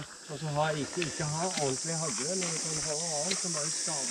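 Steady high-pitched insect chorus, with a man talking quietly beneath it.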